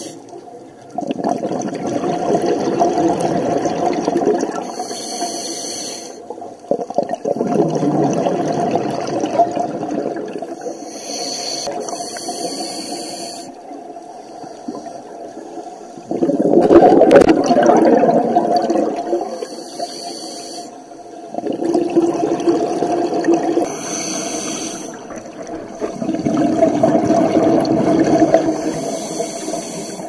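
Scuba regulator breathing, recorded underwater: each breath is a short high hiss as air is drawn, then a rush of exhaled bubbles lasting about three seconds. The cycle repeats about five times, roughly every six seconds, with the loudest bubble burst about midway.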